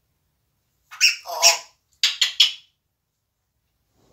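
African grey parrot calling: two loud calls about a second in, followed by four short quick ones in a row.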